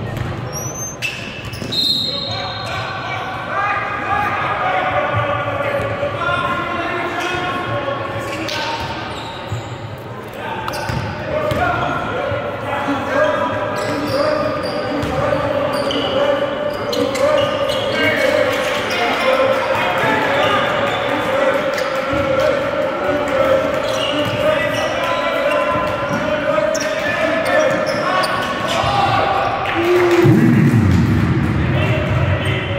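Basketball game in a gym: the ball bouncing on the court amid players and coaches calling out, echoing in the hall.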